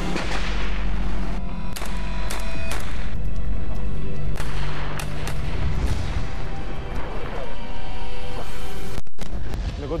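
Loud dramatized gunfire: a dense barrage with several sharp shots standing out, over tense soundtrack music. It cuts off suddenly about a second before the end.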